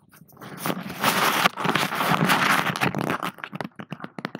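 Paper tissue rustling and scraping right against a headset microphone as it is wrapped over it as a makeshift pop and wind filter, loud and close, ending in a few sharp clicks of handling near the end.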